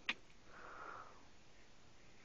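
A short click, then a faint sniff through the nose lasting about half a second.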